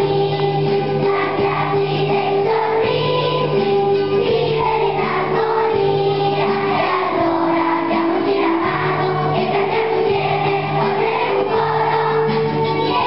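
A large choir of primary-school children singing an Italian Christmas song.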